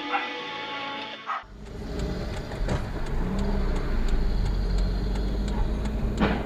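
Background music for about the first second and a half, then an abrupt switch to a dashcam recording from inside a moving car: a steady low rumble of engine and road noise, with faint light ticks about three a second.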